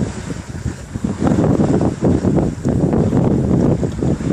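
Wind on the sails and rigging of a Grand Soleil 34 sailing yacht under way, buffeting the microphone in uneven gusts that grow louder about a second in.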